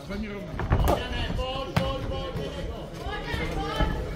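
Men shouting instructions over a boxing bout, with about three sharp thuds of punches landing, the loudest about a second in.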